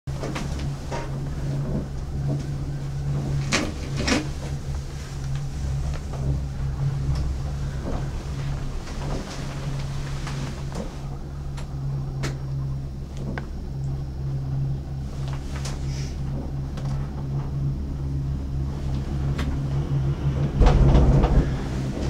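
Gondola lift machinery heard from inside a cabin: a steady low drone with scattered knocks and clunks, and a louder low rumble near the end.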